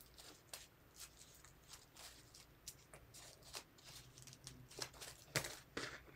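Faint crinkling and rustling of folded origami paper being shaped by fingers: a scatter of small irregular crackles, a few louder ones near the end.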